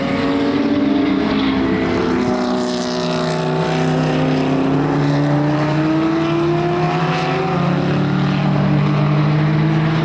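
Dodge Viper GT3 race car's V10 engine running on track with a deep, continuous note. Its pitch eases down a little midway, then climbs slowly as the car pulls away.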